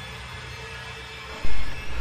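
Horror trailer sound design: a low, dark rumbling drone, then a sudden loud low boom about one and a half seconds in, a jump-scare hit.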